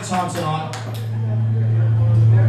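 Upright double bass feeding back through the amplification: a low steady hum that starts about half a second in and swells louder.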